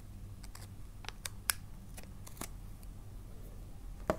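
Scissors snipping wrapping paper: a run of short, sharp snips and clicks, the loudest about a second and a half in.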